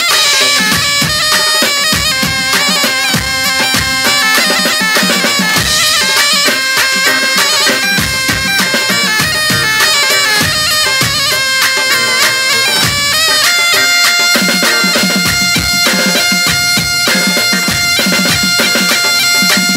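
Live Arab wedding dance music: davul drums beaten with sticks in a steady, driving rhythm under a loud, shrill reed-pipe melody in the zurna style.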